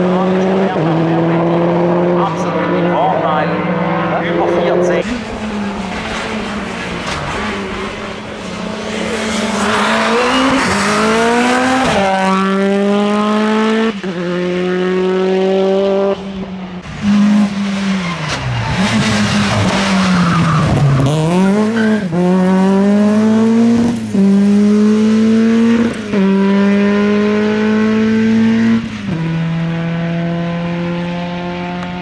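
Hillclimb race car engines at full throttle, the pitch climbing steeply and dropping sharply at each upshift, about every two seconds. In the middle the pitch falls away and climbs again, as on braking and downshifting into a bend and then accelerating out.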